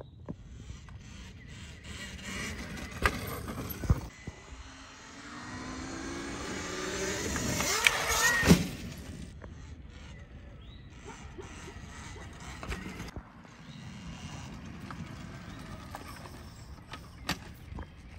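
Talaria Sting R electric dirt bike riding over grass: a faint electric motor whine and tyre noise that swell as it accelerates, loudest about eight seconds in, then fall away.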